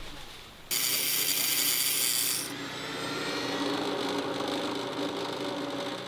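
Electric bench grinder grinding shell: a harsh, high grinding sound starts suddenly about a second in and lasts about two seconds, then the grinder keeps running more quietly.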